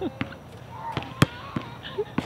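Basketball bouncing on an outdoor hard court: a few sharp separate bounces, the loudest a little over a second in.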